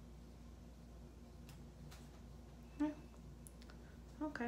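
Quiet room tone with a few faint clicks, and a short hummed vocal sound from the painter a little before three seconds in.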